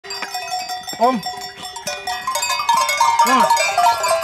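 Bells on a herd of goats ringing, many overlapping steady tones jangling as the animals move, with two short calls rising and falling in pitch, about a second in and again after three seconds.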